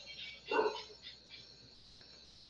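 A single short dog bark about half a second in, over faint high chirping in the background.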